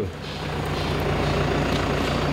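A van's engine running close by: a steady low hum under an even rushing noise that builds over the first half second.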